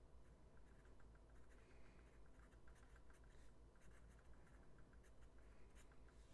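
Faint scratching of a Diplomat Magnum fountain pen's JoWo medium nib writing cursive on Rhodia paper, in short uneven strokes.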